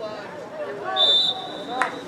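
Referee's whistle blown about a second in: one high, steady blast, loudest at first and then held more faintly, signalling the play dead. Spectators' voices run underneath.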